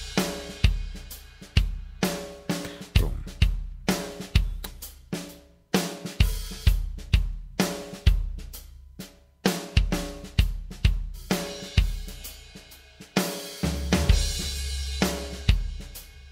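Sampled acoustic drum kit from the Toontrack EZdrummer 2 software drum plugin playing MIDI grooves, with kick, snare, hi-hat and cymbals. It is heard as grooves being auditioned one after another: the playing stops and restarts a couple of times.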